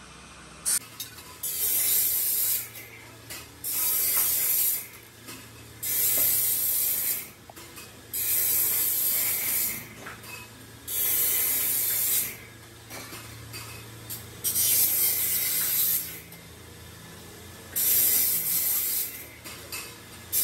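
Steel tubes being bent on a hand-lever tube-bending jig: a hissing, scraping burst of about a second with each bend, repeating every two to three seconds. A steady low hum runs underneath.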